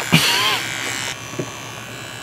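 Electric shaver buzzing steadily as it is run over a man's face and stubble. There is a louder, noisier burst with a voice in it during the first second.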